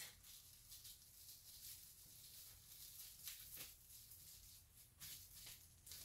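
Near silence, with a few faint, brief rustles of plastic wrap being folded and handled around a photo print.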